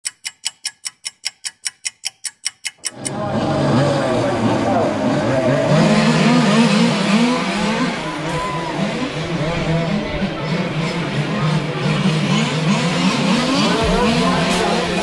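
Several radio-controlled racing cars running on a track, their engines overlapping and sliding up and down in pitch as they accelerate and slow. This is preceded by about three seconds of rapid, even ticking.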